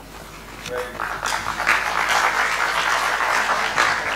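Audience applauding, building up about a second in and then holding steady.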